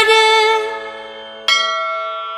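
The last held note of the devotional music fades away, then a bell is struck once about one and a half seconds in and rings on, slowly fading.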